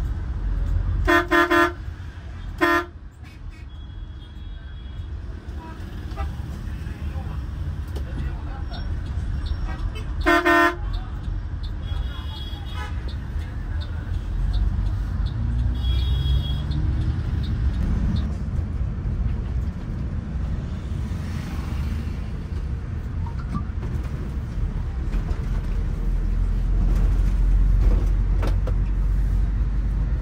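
Vehicle horn honking in several short blasts in the first few seconds and once more about ten seconds in, over a steady low rumble of motor traffic.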